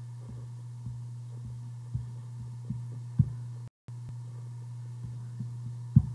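A steady low electrical hum with about eight soft clicks and knocks scattered through it, the loudest a little past the middle and at the very end, fitting mouse clicks at a computer. The sound cuts out completely for a moment about two-thirds of the way in.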